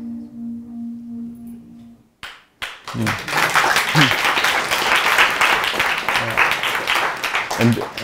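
The last sustained mallet-percussion notes of a music piece fade out over the first two seconds. After a brief pause, audience applause starts about three seconds in and keeps going.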